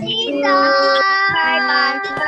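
Several children calling out drawn-out 'bye' at once, their voices overlapping and held in a sing-song way.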